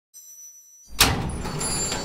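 Cinematic intro sound effect: a faint high tone, then a sudden heavy hit about a second in, followed by a low rumble that dies away slowly.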